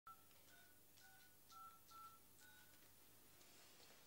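Faint keypad tones from a mobile phone being dialled: about six short two-note beeps, roughly two a second, one for each key pressed, ending about two and a half seconds in.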